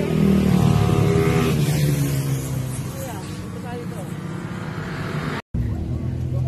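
A motor vehicle engine running close by, loudest in the first second and a half, then dropping in pitch and fading as it moves off. After an abrupt cut near the end, another steady engine hum.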